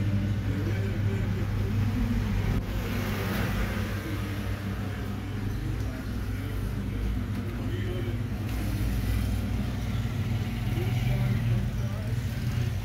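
A steady low hum, with faint, muffled voices under it.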